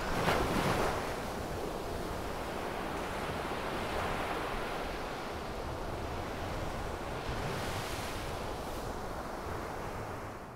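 Ocean waves breaking and washing up a sandy beach: a steady rush of surf that swells slightly near the start and again in the second half.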